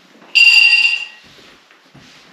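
A single loud, high-pitched electronic tone that starts sharply about a third of a second in, holds steady for under a second and then fades.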